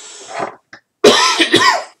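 A man clears his throat: a softer noisy breath first, then a loud, rough throat-clearing about a second in.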